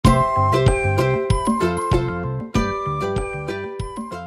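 Short, bright intro jingle of pitched, chiming notes over a repeating bass line, getting softer toward the end.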